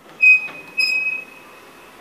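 Two electronic beeps from a KONE Sigma elevator car operating panel as floor buttons are pressed: a short, loud one, then a longer one about half a second later that fades away, both on a single high tone.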